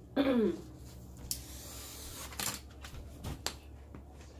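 Brittle ribbon candy being handled and broken by hand: about a second of rustling, then several sharp clicks and snaps.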